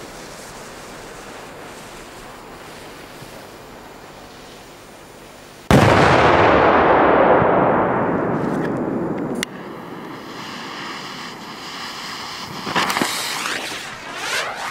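Firecracker going off: a sudden loud blast about six seconds in, followed by a few seconds of loud rushing noise that cuts off abruptly. Near the end come a few sharper cracks.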